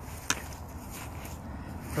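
A single sharp click about a third of a second in, over a low steady rumble.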